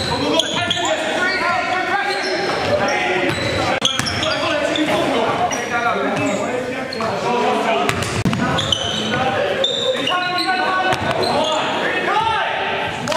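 Basketball dribbled and bouncing on a wooden gym floor during play, with a few sharp bounces standing out, among players' indistinct shouts and chatter, all echoing in a large hall.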